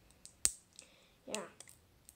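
Small clicks of a CR2 battery and a plastic battery cap being handled between the fingers: one sharp click about half a second in, then a few fainter ones.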